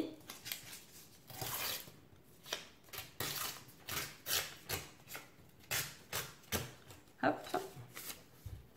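Plain white paper being torn against the patterned edge of a We R Memory Keepers tear guide ruler, pulled off bit by bit in a quick series of short rips.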